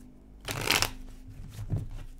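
A deck of tarot cards being shuffled by hand: a short rustle of cards sliding about half a second in, then a soft thump later on.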